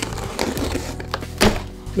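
Cardboard shipping box being opened: the tape slit and the flaps scraped and pulled back, with scratchy clicks and one sharp crack about one and a half seconds in. Quiet background music runs underneath.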